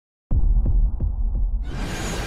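Deep bass hum with slow throbbing pulses, about three a second like a heartbeat, starting suddenly after a brief silence; a hiss swells in over it about a second and a half in.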